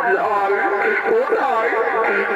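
A voice heard over a public-address horn loudspeaker, speaking or chanting with a wavering pitch.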